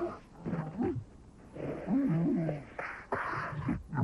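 Cartoon animal vocal sounds: short rising and falling calls in separate bursts, with a few sharp clicks near the end.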